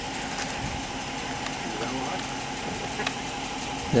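Parked police cruiser's engine idling: a steady hum with a faint constant whine over it.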